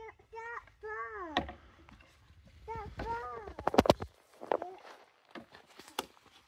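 A young child's short, high-pitched utterances, then a cluster of sharp clattering knocks a little under four seconds in, with a few lighter knocks after: plastic snow shovels striking and scraping on the paved drive.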